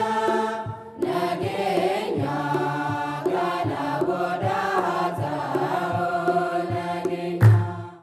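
Ethiopian Orthodox religious chant sung by voices over a low beat about every two-thirds of a second. The chant dips briefly about a second in, and a loud low thump comes near the end before the sound cuts off.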